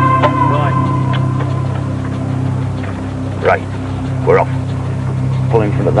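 A steady low machine hum runs under background music, with two short shouted voices about three and a half and four and a half seconds in.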